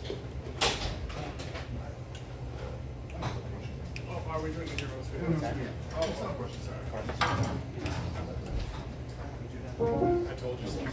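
Bar room ambience: faint background chatter over a steady low hum, with scattered sharp knocks and clicks.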